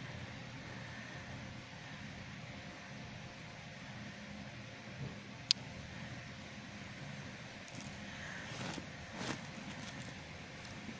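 Small plastic toy parts being handled over a steady low room hum, with one sharp click about halfway through and a few brief rustles near the end.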